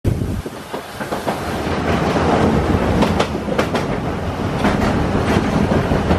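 Narrow-gauge steam train running, heard from on board: a steady rumble and rush of running noise with irregular sharp clicks from the wheels on the rails.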